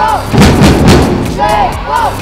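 Supporters' big drums pounded in a loud run of heavy beats, with the crowd shouting along in the arena.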